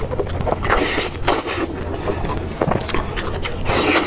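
Close-miked eating of fatty braised pork belly: wet chewing and sucking mouth sounds, with louder bursts about a second in and again near the end.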